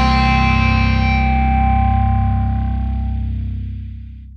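The closing held chord of a heavy rock song, played on distorted electric guitar, rings out and slowly fades. The high overtones die away first, about a second in, and the low notes trail off near the end.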